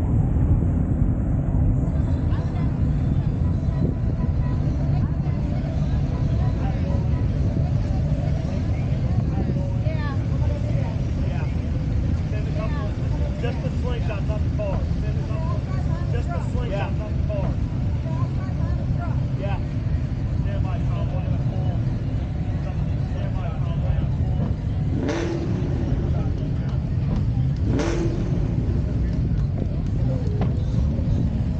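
Outdoor car-meet ambience: a steady low rumble of wind on the microphone and running car engines under scattered crowd chatter, with two short, sharp sounds near the end.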